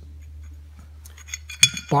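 Small steel plates knocking together in the hands: a few light taps, then one sharp metallic clink that rings briefly near the end, over a steady low hum.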